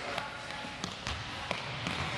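Soccer ball being kicked and bouncing on a hardwood gym floor, a handful of short sharp knocks over a steady echoing hall din.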